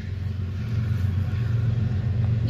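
A motor vehicle engine idling: a steady low hum.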